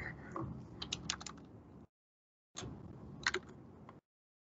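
Typing on a computer keyboard: a quick run of keystrokes about a second in, then a couple more near the end.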